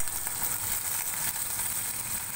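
Chopped green chillies and cumin seeds sizzling steadily in peanut oil in a steel kadhai, with a sharp click right at the start.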